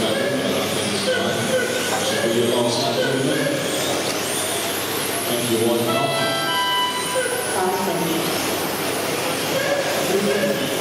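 Indistinct voices echo in a large sports hall while electric RC touring cars run on the carpet track. About six seconds in, a cluster of steady high tones sounds for a second or so.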